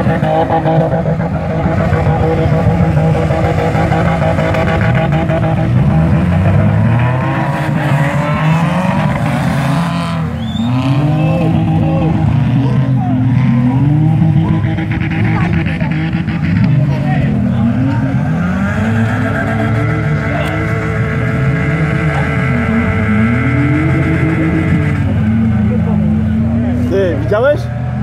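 A car engine is revved hard over and over in the mud. Its pitch rises and falls about every two seconds as the driver works the throttle to keep the wheels spinning and push through the bog. Near the end a higher whine joins in.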